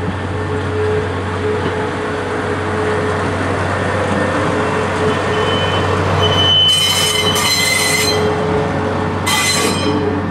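A small diesel shunting locomotive moving a train of rail cars slowly past: a steady engine rumble with the running of steel wheels on the rails. High-pitched wheel squeal sets in about two-thirds of the way through and comes again near the end.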